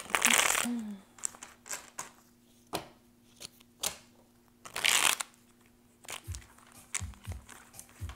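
A deck of tarot cards being handled and shuffled by hand: two short rustling runs of the shuffle, one at the start and one about five seconds in, with light clicks and taps of the cards and their cardboard box in between and a few soft knocks against the counter near the end.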